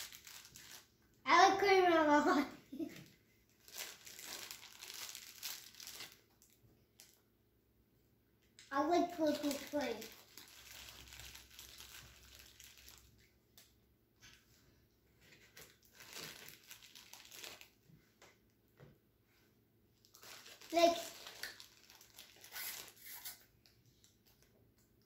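A small plastic bag of candy decorations crinkling on and off as it is handled, between three short bursts of a child's voice.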